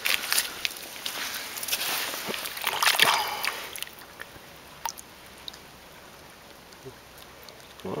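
Shallow creek water splashing and sloshing as a hand works in it, busiest in the first three seconds. After that it settles to a faint steady trickle of the creek with a few small clicks.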